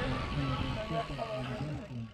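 Indistinct chatter of several voices over a low wind rumble on the microphone, dropping away at the very end.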